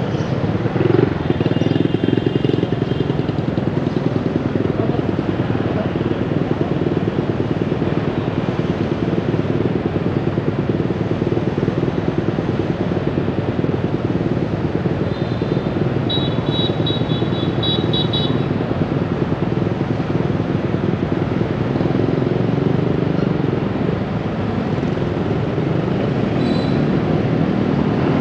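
Motorbike engines idling in stopped city traffic, a steady running, with a short run of high beeps a little past the middle.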